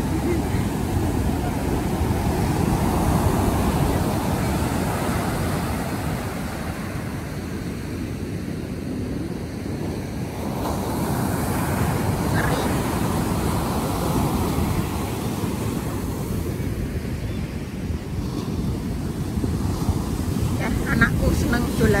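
Ocean surf breaking and washing up the beach, rising and easing in slow surges, with wind buffeting the microphone. A brief laugh near the start.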